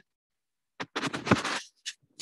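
A brief scratchy rustling noise lasting about a second, starting a little under a second in, with a short scrape near the end.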